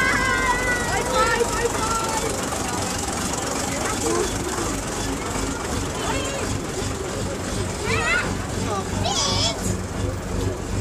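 Crowd of spectators chattering with many overlapping voices over a low, steady engine hum from passing vehicles. A brief high-pitched sound, perhaps a child's shout, stands out near the end.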